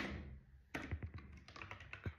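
Typing on a computer keyboard: one loud key strike at the very start, then a quick run of keystrokes from about three-quarters of a second in.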